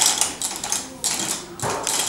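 Plastic toy gears on a magnetic metal wall clicking and clattering as a child grabs and turns them, with a sharp clatter at the start and another about a second in.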